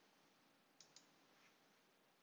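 Near silence with two faint, sharp clicks of a computer mouse button in quick succession, a little under a second in.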